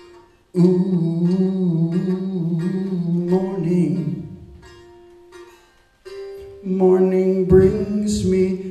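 A man singing a slow, sad love song unaccompanied but for a faint steady tone, in two long held notes with a wavering pitch separated by a short pause.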